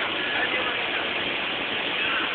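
Steady background din with faint voices in it; no impact yet.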